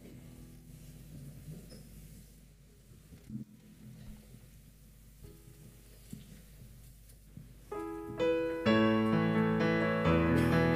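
Keyboard in a piano sound playing soft held low chords, then coming in much louder with full chords near the end: the introduction to a hymn beginning.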